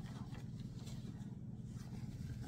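Quiet room tone with a steady low hum and faint rustling of fabric being handled.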